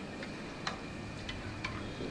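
Steel ladles clinking against a metal wok of sugar syrup: about four light, sharp metallic ticks, spaced unevenly, one ringing briefly, over a steady background noise.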